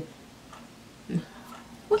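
A pause in a woman's speech: quiet room tone with one short, low hum-like vocal sound from her a little past a second in, a hesitation as she searches for words. Her speech starts again right at the end.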